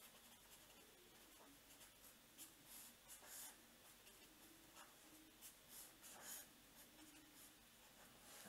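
Faint scratching of a felt-tip pen writing and drawing boxes on paper, in short irregular strokes.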